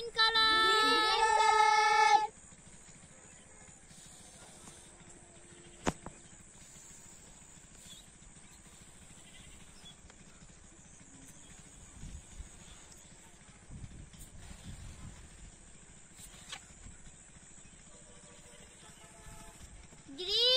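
A loud, pitched voice-like call with sliding pitch for about the first two seconds, then a quiet outdoor stretch while a long rocket balloon is blown up by mouth, with faint low puffs of breath and one sharp click about six seconds in.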